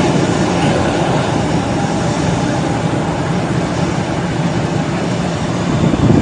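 Airliner's jet engines running as it rolls through deep standing water on a flooded runway, with a steady, noisy rush of spray thrown up by the wheels.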